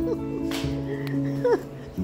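A dog whimpering in short, high whines, a couple at the start and again about a second and a half in: an attention-seeking whine. Background music plays steadily underneath.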